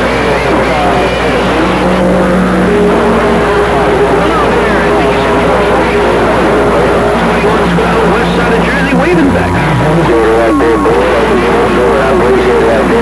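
CB radio receiving distant skip stations on a crowded channel: loud, steady static with several stations' garbled voices talking over one another and whistling carrier tones that come and go.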